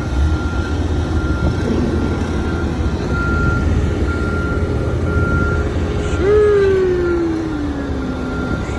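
Heavy construction equipment engine running steadily with a low rumble, with a thin high beep tone sounding intermittently in the middle. Near the end a man's voice draws out a long, falling "sheeeesh".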